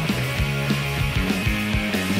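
Oi! punk rock band playing an instrumental stretch of a song: electric guitars and bass holding chords over a steady, driving drum beat, with no vocals.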